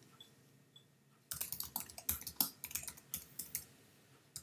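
Typing on a computer keyboard: after a quiet first second, a fast run of keystrokes lasting about two seconds, with a couple more near the end.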